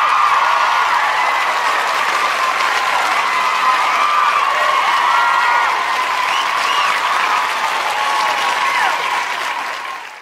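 Crowd applause mixed with cheers and whistles, loud and steady, easing a little near the end.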